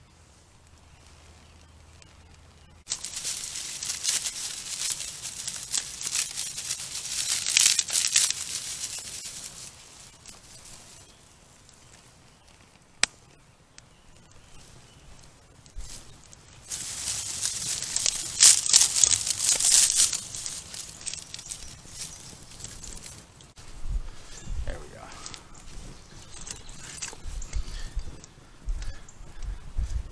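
Dry grass and kindling crackling and rustling as a small campfire is lit, loudest in two long stretches, with a single sharp snap about halfway.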